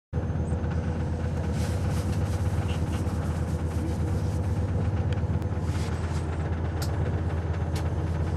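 Steady low rumble of a passenger train heard from inside the carriage, with a faint steady hum and a few light clicks.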